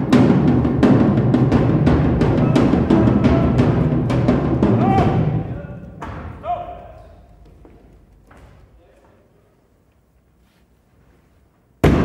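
Loud battle drumming, sharp regular strikes about three a second, with voices over it. It dies away over the second half to near silence.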